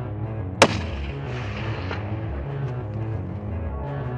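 A single hunting-rifle shot about half a second in, with a short echo trailing after it, over background music.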